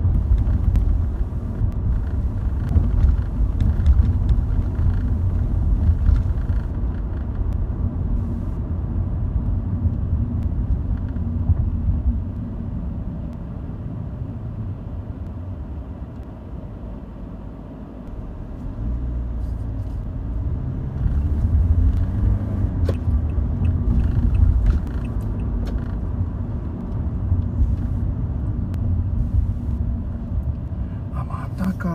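Car interior noise while driving: low engine and tyre rumble from the moving car. It dies down to a quieter idle while the car waits at a red light midway, then picks up again as it pulls away and accelerates.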